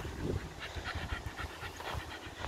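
Patterdale terrier panting quickly and evenly, several short breaths a second.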